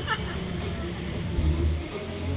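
A low, uneven rumble, swelling briefly near the end, with faint voices in the background.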